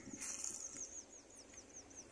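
A bird calling outdoors: a short harsh note, then a fast, even series of high chirps at about five a second.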